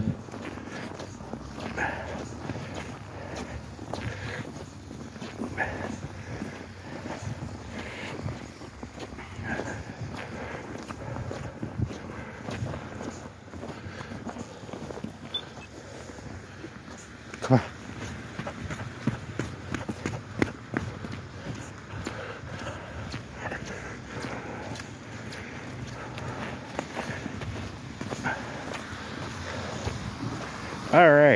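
Footsteps of people walking on a snow-covered sidewalk, an uneven run of soft strokes, with one sharp knock a little past halfway.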